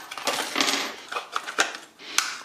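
Clear plastic blister packaging being pulled apart by hand, crackling with a series of sharp clicks.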